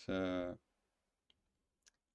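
A man's voice trailing off on a long drawn-out vowel, then near silence broken by two faint short clicks.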